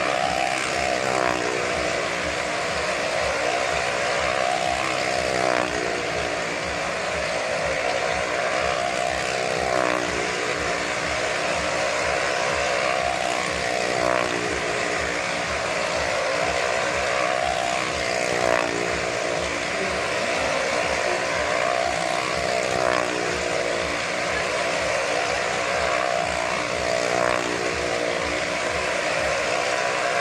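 Motorcycle engine running hard as it circles the wall of a well-of-death drum, its pitch rising and falling over and over above a steady, dense din.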